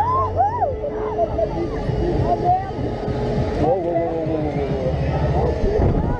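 Wind rushing over an action camera's microphone on a fast-swinging fairground thrill ride, with riders letting out short rising and falling whoops and shouts.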